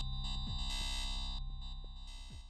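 Ableton Operator FM synthesizer holding a sustained electronic tone, its bright upper overtones switching on and off in steps as a programmed aftertouch (channel pressure) envelope changes the FM. A low drum hit with a quickly falling pitch comes about half a second in.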